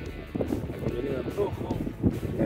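Indistinct voices over background music.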